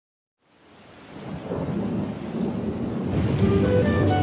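Rain-and-thunder storm sound fading in from silence and swelling to a steady rush with low rumble. Near the end, held instrument notes of the band's intro begin over it.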